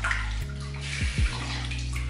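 Water running steadily from a tap, with low steady notes of background music underneath.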